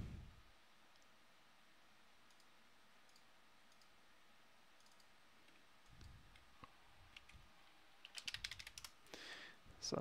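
Near silence, then faint clicking from a computer keyboard and mouse in the second half, with a quick cluster of clicks about two seconds before the end.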